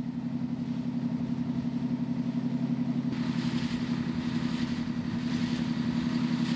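A river boat's engine running steadily at an even speed, with a fast, regular pulse. A rushing hiss joins it about halfway through.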